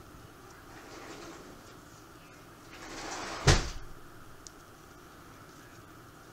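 Faint handling noise of gloved hands working a rubber keg-tap seal, with a single sharp knock about three and a half seconds in.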